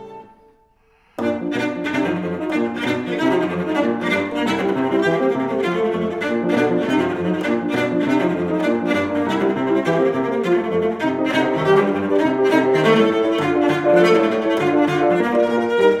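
Cello and grand piano playing together. A held note dies away into a short pause, and about a second in they break into a quick, light passage of rapid short notes that runs on steadily.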